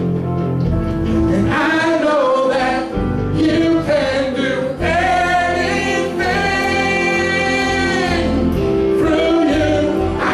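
Gospel worship song sung by a group of voices over instrumental accompaniment, with long held notes.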